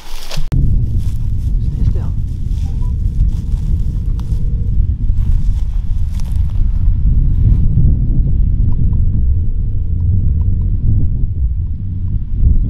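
Wind buffeting the microphone in a steady low rumble. Twice, faintly, a phone's ringback tone sounds for about two seconds, four seconds apart, as an outgoing call rings.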